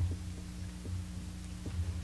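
Steady low electrical hum with a few faint low knocks, the room tone of a sound system during a pause.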